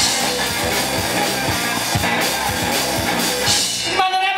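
Live rock band playing loud, with drum kit and electric guitar; the full band comes in suddenly at the start and keeps a steady beat.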